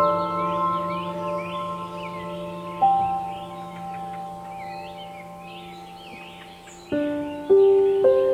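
Soft, slow piano music, each chord struck and left to ring and fade, with new notes about three seconds in and again near the end. A bed of birds chirping and singing runs underneath throughout.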